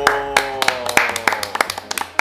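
A few people clapping their hands, a quick, uneven patter of claps.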